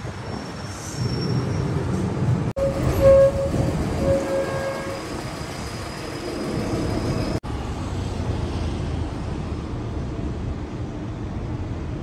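Steady low rumble of a moving vehicle, with a brief held tone about three seconds in; the sound breaks off abruptly twice.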